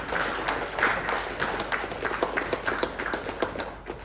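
Applause: many people clapping, thinning out near the end.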